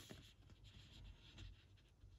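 Faint rustle of a printed paper insert being handled and shifted in the hands, with soft handling noise.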